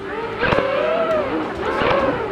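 Small drone's propellers whining, their pitch wavering up and down as the throttle changes, with a sharp click about half a second in.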